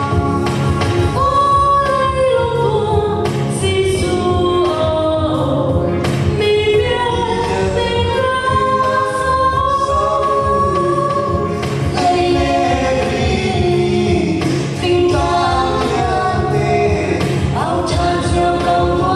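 Voices singing a Lai (Chin) Christian Christmas song together, choir-style, over steady musical accompaniment.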